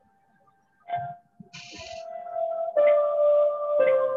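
Electronic keyboard playing a few held notes, each a step lower than the last, heard through a video-call audio feed.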